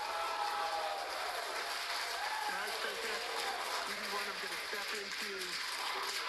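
Steady hiss with faint, indistinct voices in it, from the spacewalk livestream's audio.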